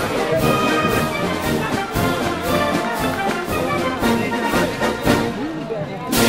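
Brass band music playing, with trumpets and trombones.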